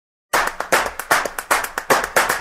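Hand claps in a quick, uneven rhythm, about five a second, starting about a third of a second in.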